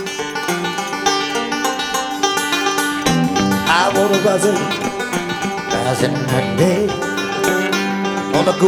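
Live rock band with banjo playing an instrumental intro: quick banjo picking over electric guitar, with the bass filling in about three seconds in and a few bent, gliding guitar notes after that.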